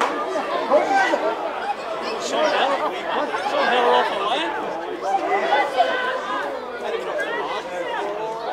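Overlapping chatter of many voices at a football ground, with no single speaker standing out.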